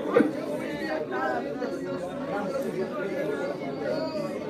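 A congregation praying aloud all at once: many voices overlapping in a steady babble of spoken prayer, with no single voice standing out.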